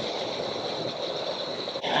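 Steady running noise of a moving passenger train heard from inside the carriage, with a steady high-pitched whine over the hiss.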